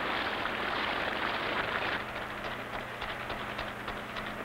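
Water spraying from an irrigation sprinkler nozzle, a rain-like hiss that is strongest for the first two seconds and then thins to scattered ticks of droplets.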